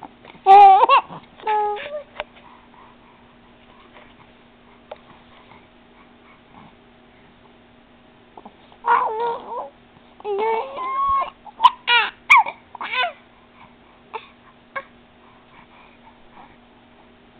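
A 4½-month-old baby's cooing and squealing noises, high-pitched and gliding up and down: two short bursts about half a second in, then a run of them from about nine to thirteen seconds.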